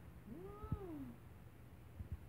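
A baby's short coo that rises and then falls in pitch, about half a second long, with a soft low knock from handling partway through.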